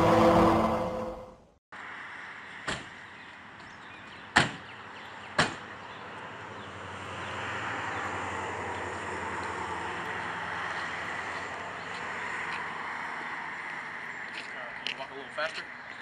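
A brief loud rush of noise that cuts off sharply, then three single sharp knocks on a wooden front door, about a second or two apart. A steady outdoor rush follows, like passing traffic.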